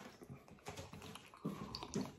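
Light, scattered clicks and taps as a stainless steel mug is handled and lifted to drink.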